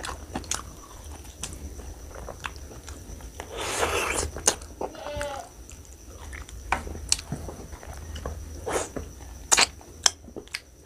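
Close-miked eating of mutton curry and rice by hand: wet chewing, biting and lip smacks, with many sharp mouth clicks and a longer sucking stretch about four seconds in.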